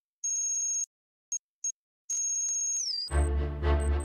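Electronic ringtone-like tones: a held high beep, two short blips, then another held tone that slides down in pitch. About three seconds in, theme music with a heavy deep bass comes in.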